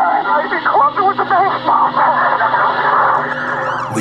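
Indistinct voices with no clear words, heard through a thin, band-limited, radio-like sound.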